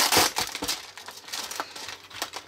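Plastic cookie wrapper crinkling and rustling as a hand peels back the resealable flap and reaches into the pack. It is loudest in the first half second, then trails off into lighter crackles.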